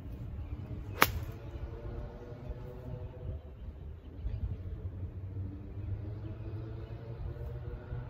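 An 8-iron striking a golf ball off grass: one sharp crack about a second in, over a steady low rumble.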